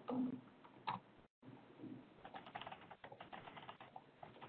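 Faint typing on a computer keyboard: a fast run of keystrokes in the second half, as login credentials are entered at a router console.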